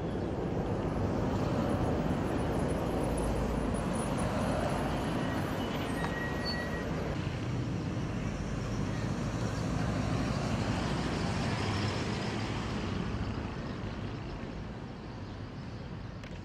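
Road traffic going past: a steady wash of vehicle noise that swells a couple of times and eases off near the end.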